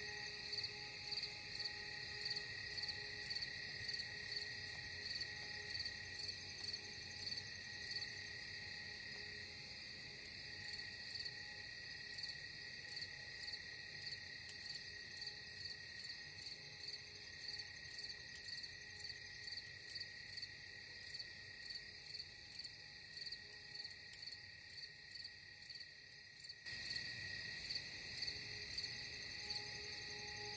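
Crickets chirping in a steady, regular pulse of a few chirps a second, over a soft steady drone that fades and then comes back abruptly near the end.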